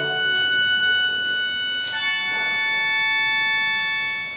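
A high, organ-like chord held steadily by reed instruments, with no low parts, changing to a different chord about two seconds in.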